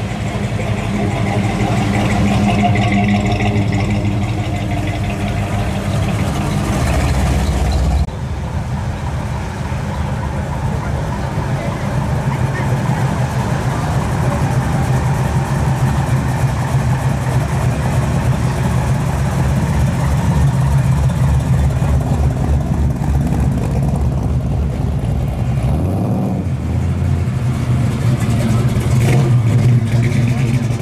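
Engines of custom hot rods and lowered classic pickups running at low speed as the vehicles drive slowly past one after another, a steady low engine note throughout. The sound changes abruptly about eight seconds in.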